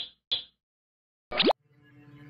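Cartoon sound effects for an animated logo: two short pops, then a quick swoop falling in pitch about a second and a half in. A soft held chord of music fades in near the end.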